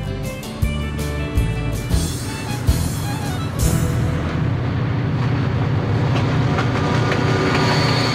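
A lashup of diesel-electric freight locomotives passing close by under power. Their engines make a steady low rumble that takes over through the second half, with background music laid over it.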